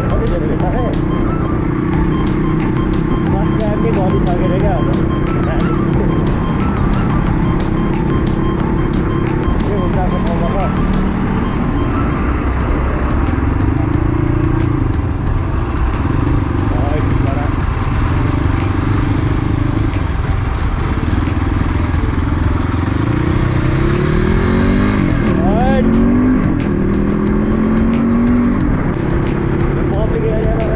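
Dirt bike engine running while riding on a road, its pitch stepping and rising with throttle and gear changes, including a rising rev about three-quarters of the way through.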